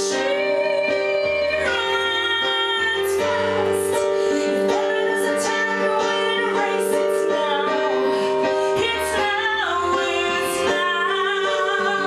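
A woman singing long, drawn-out notes over an electric keyboard, which holds a steady chord with bass notes coming in and out.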